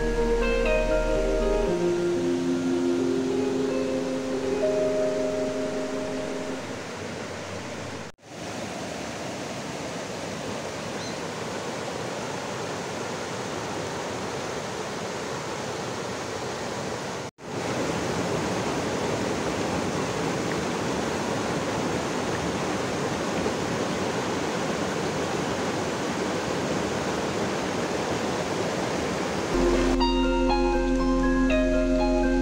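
Soft background music fades out over the first several seconds. After an abrupt cut, a shallow rocky stream rushes steadily over stones, a little louder after a second cut. The music comes back at the very end.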